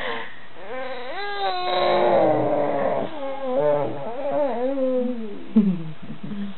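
A baby making long, drawn-out whiny vocal sounds that slide up and down in pitch, starting about a second in and ending with a falling sound near the end, with a short bump just before it.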